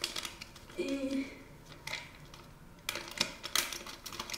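Powder bleach being poured from a sachet into a plastic cup: the packet crinkling, with light ticks and taps against the cup and a cluster of sharp ticks about three seconds in.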